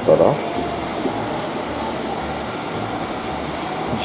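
Steady low rumbling hum of a railway station concourse, with no sharp events.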